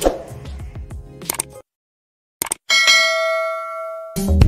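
Subscribe-button sound effect: a couple of quick clicks, then a single notification-bell ding about three-quarters of the way in that rings out and fades over a second and a half. Before it come faint clicks and a short stretch of dead silence.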